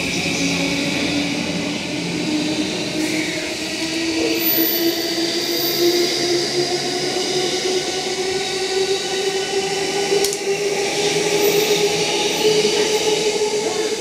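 Electric commuter train on the adjacent track pulling out and accelerating, its motor whine rising slowly and steadily in pitch. A single sharp click is heard about ten seconds in.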